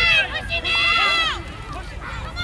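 Spectators shouting and cheering during a youth football play, with a long high-pitched yell starting about half a second in that drops in pitch as it ends.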